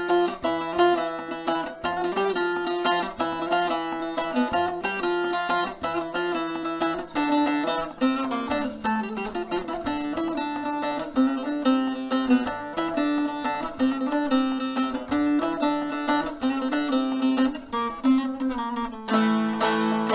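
Long-neck bağlama (uzun sap saz), tuned B–E–A, played solo with a plectrum: a melody in quick picked notes, its pitch stepping down about eight seconds in and staying lower to the end.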